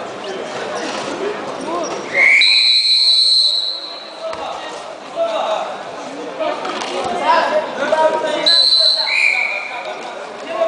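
A referee's whistle blown twice in a wrestling bout: a long, high blast about two seconds in and a shorter one near the end, echoing in a large hall.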